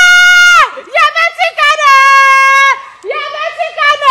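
A high voice shouting in long, drawn-out cries, each held at a steady pitch for about a second, with shorter broken cries between them. This is shouting over a goal.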